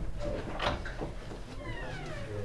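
A door being opened by its knob: a few light latch clicks, then a high squeak falling in pitch near the end, typical of the door's hinge as it swings open.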